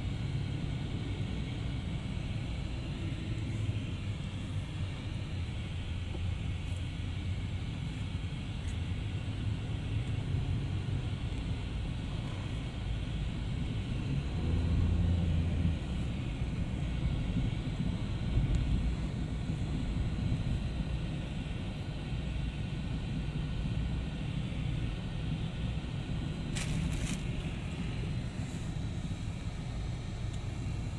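Road noise inside a moving car: a steady low rumble of engine and tyres while driving in city traffic, swelling briefly about halfway through. A short sharp noise cuts in near the end.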